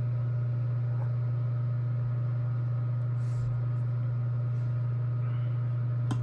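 Steady low hum of a space heater running, unchanging in level, with a faint brief rustle about three seconds in.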